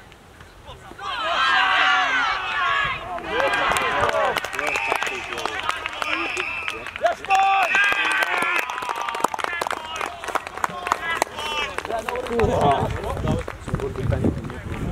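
Several people at a youth rugby league match shouting at once, their voices overlapping, starting about a second in and easing off after about nine seconds.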